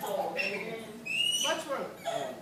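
Low voices, then about a second in a short, high whistle-like note that rises slightly in pitch and lasts about half a second.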